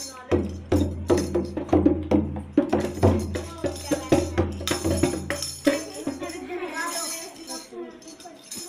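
Dholak played by hand: deep bass-head strokes and sharper slaps in a quick, uneven rhythm of about two to three strokes a second. The deep strokes stop about six seconds in, leaving lighter, higher sounds.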